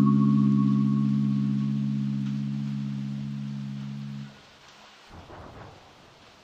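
The final held low chord of the background music, dying away slowly and cutting off about four seconds in, leaving only faint hiss.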